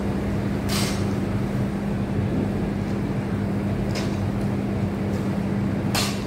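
A steady low machine hum, with a few short sharp noises about a second in, at about four seconds and at the very end.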